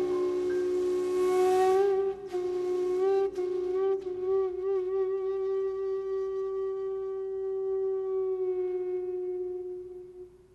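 Shakuhachi playing a long held note that wavers in pitch about halfway through, over sustained piano chords that die away about four seconds in; the flute note fades out near the end.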